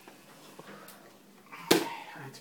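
A single sharp knock or click about three-quarters of the way through, against quiet room noise.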